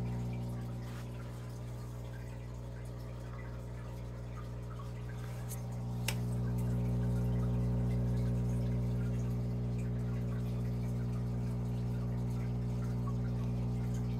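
Aquarium equipment running: a steady electric hum from the pumps with the faint trickle and bubbling of water. There is one sharp click about six seconds in, and the hum grows louder around the same time.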